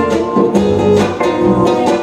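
Classical (nylon-string) acoustic guitar strummed as song accompaniment, a short instrumental passage between sung lines, with several strokes ringing on.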